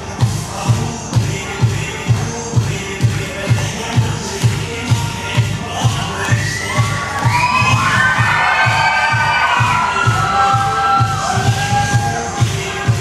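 Dance music with a steady thumping beat, about two beats a second. About six seconds in, an audience of young voices starts shouting and cheering over it, louder toward the end.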